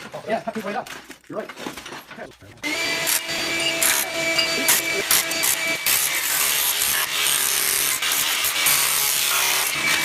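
Bosch Bulldog Extreme rotary hammer chipping ceramic floor tile off the thinset, with a vacuum running alongside to catch the dust. The loud, steady power-tool noise with scattered cracks of breaking tile starts about a quarter of the way in, after a few seconds of voices.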